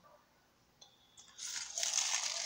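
Clear plastic shrink-wrap from a DVD slipcase being handled and crumpled, a dense crinkling that starts about a second and a half in, after a near-silent first second.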